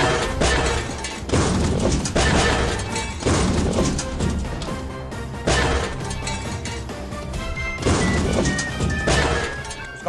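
Background music cut through by a series of sudden crashing metal-clang sound effects, about eight in all, as pieces of metal are pulled onto a magnet and stick to it.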